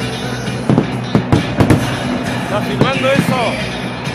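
Fireworks going off over a crowd: a string of sharp bangs and crackles, with a few whistling glides a little before the end, over the crowd singing.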